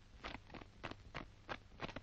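Faint footsteps of soldiers' boots walking on a parade-ground surface, a footfall about every third of a second, over a low steady hum from the old film soundtrack.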